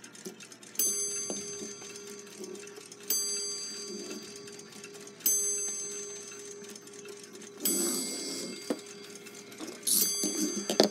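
A clock striking: four bell-like strokes a little over two seconds apart, each ringing on and fading slowly, the last one harsher and noisier.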